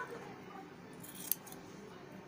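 Scissors snipping through the end of a wool-yarn braid: one short, crisp cut about a second in, trimming the braid even.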